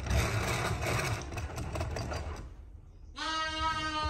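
Milk powder being whisked into milk in a plastic tub: a fast, busy rattling stir that stops about two and a half seconds in. Near the end a lamb bleats once, a long steady call.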